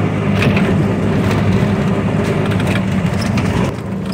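Motor vehicle engine running steadily with road noise, heard from inside the open cabin while driving, with a few short rattles and knocks; the engine note drops back slightly near the end.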